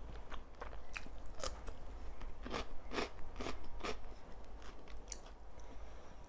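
Close-miked chewing of a mouthful of salad with crisp raw vegetables: a run of sharp crunches, loudest and most regular from about two and a half to four seconds in, roughly two to three a second.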